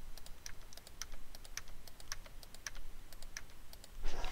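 Faint typing and clicking on a computer keyboard and mouse: a string of light, irregular clicks, about three a second.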